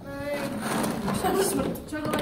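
Children's voices talking and exclaiming over one another, with a short high vocal sound at the start.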